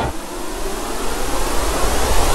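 Logo-intro noise sound effect: an even rushing hiss with no tone in it. It cuts in suddenly and slowly grows louder.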